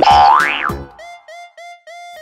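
A cartoon boing sound effect, a tone sliding up and then back down, over upbeat background music in the first half second or so. After it the beat drops out and about four short, evenly spaced notes play.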